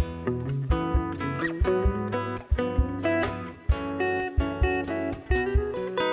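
A live band playing an instrumental passage, with guitar over a steady drum beat and no singing.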